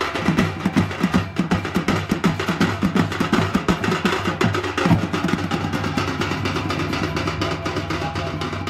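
Fast, steady drumming on folk drums, several strokes a second over a low steady hum; the strokes become less distinct after about five seconds.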